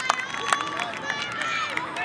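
Children's voices calling and chattering on an outdoor football field, with a few sharp smacks, about three in the two seconds.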